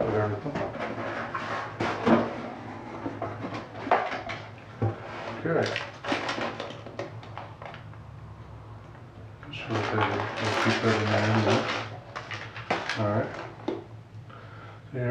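Cardboard boxes and packing paper being handled: a run of light knocks and scrapes of cardboard, then a louder stretch of paper crinkling about ten seconds in as crumpled kraft packing paper is pulled out of the box.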